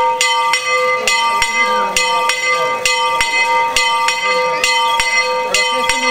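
A church bell rung by pulling its rope, struck in quick, slightly uneven strokes about twice a second, each stroke ringing on into the next.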